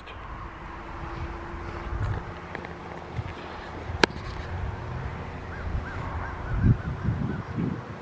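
Outdoor background with a steady low rumble. There is a sharp click about four seconds in, and a bird calls a quick series of short notes in the second half.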